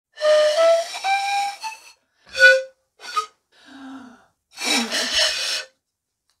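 Small pan flute blown hard and breathily, with a lot of air hiss. One long note steps up in pitch over its first couple of seconds, then a few short separate toots follow. Near the end comes a longer, noisier blast.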